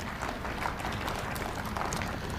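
Steady room noise of a lecture hall: an even hiss with faint rustling from the audience.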